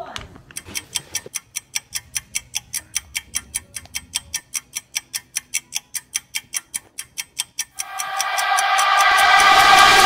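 Clock-like ticking laid over an edited montage, fast and even at about four to five ticks a second, stopping near the end as a pitched musical swell rises in loudness into the start of a music track.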